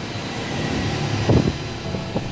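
Steady low mechanical hum, with a brief louder sound about a second and a third in.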